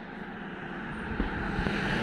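Hot-air balloon's propane burner firing: a steady rushing noise that grows gradually louder.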